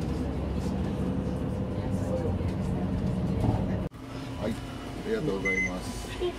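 Steady rumble of a bus's engine and road noise heard from inside the passenger cabin. About four seconds in the sound cuts to a quieter rumble with voices and a short beep.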